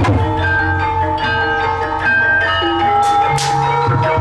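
Banyumasan gamelan music accompanying an ebeg dance: tuned percussion ringing held, bell-like notes over kendang drumming, with two sharp crashes about three seconds in.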